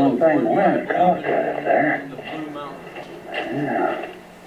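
A person talking, heard played back through the speaker of a screen showing a camcorder film.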